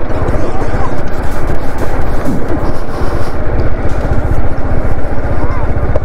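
TVS Apache RR310 motorcycle ridden slowly over rough grassland, its single-cylinder engine running at low revs with a steady, loud, fast-pulsing rumble; faint voices of people nearby are heard under it.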